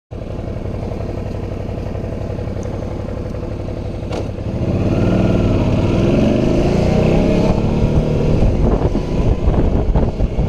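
Suzuki V-Strom's V-twin engine running steadily at idle, then a single sharp click about four seconds in, after which the engine grows louder and rises in pitch as the motorcycle pulls away and accelerates.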